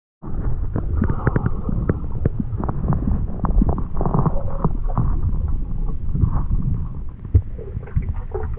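Muffled underwater sound of river current, heard from inside a submerged camera housing: a steady low rumble with many small clicks and knocks running through it.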